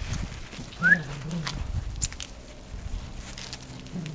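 English Cocker Spaniel puppies at play: a short rising yelp about a second in, among scattered light clicks and scuffs of paws on cobblestones.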